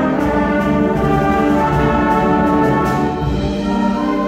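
Middle school concert band playing, brass and woodwinds holding full chords over low bass and drums. The low end thins out near the end.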